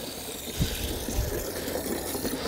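Water running from a garden hose into a plastic watering can: a steady rushing hiss, with a couple of low bumps in the middle.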